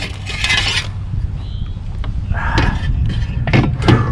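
Fish-measuring board scraping and rubbing against a kayak deck as it is slid into place, in three short rasps over a steady low rumble.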